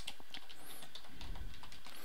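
Computer keyboard typing: quiet, irregular key clicks as a line of code is entered.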